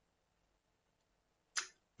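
Near silence in a speaking pause, broken about one and a half seconds in by one short, quick breath drawn in through the mouth just before speech resumes.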